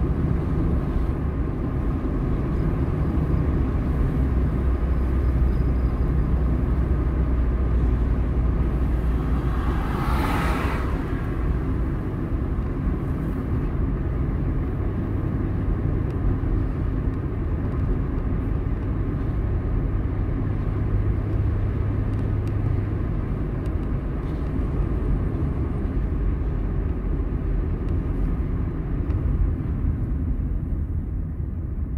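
Car driving along a road, heard from inside the cabin: a steady low rumble of engine and tyres. About ten seconds in there is a brief whoosh.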